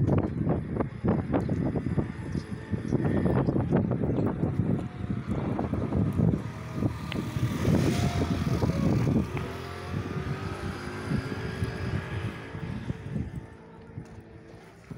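Wind rumbling in gusts on the microphone, with a motor engine running in the second half, its pitch slowly shifting.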